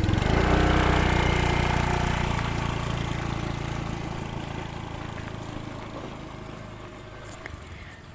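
Small motorcycle engine running as the bike rides off down a lane, loudest at first and fading steadily into the distance.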